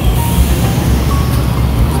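A TUE Santa Matilde electric multiple unit standing at the platform, its onboard equipment giving a steady low hum, with a brief hiss of air near the start as the train's brakes are released before departure.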